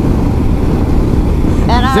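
Steady rush of wind and engine noise from a BMW R1200RT motorcycle riding two-up at highway speed, heard through a helmet microphone, heaviest in the low end.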